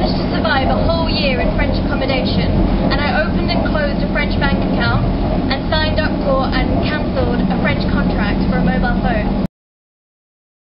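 A woman talking over the steady low hum and noise inside a Eurotunnel shuttle's car-carrying wagon. All sound cuts off suddenly about nine and a half seconds in.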